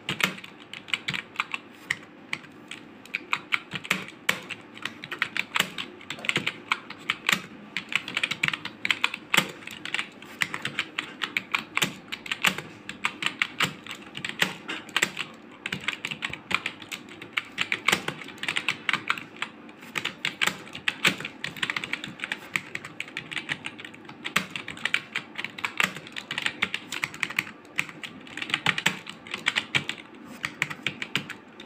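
Computer keyboard keys clicking in uneven runs of touch typing, about three keystrokes a second with a few short pauses.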